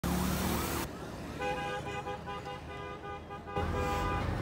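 Road traffic noise with a vehicle horn sounding a rapid run of short toots. A loud rushing noise cuts off about a second in, the horn pulses follow over quieter background, and the loud low road noise returns near the end.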